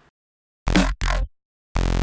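A heavy electronic snare sample from a drum-and-bass sample pack played back in a DAW: two short, punchy hits close together, then another starting near the end, each cut off sharply.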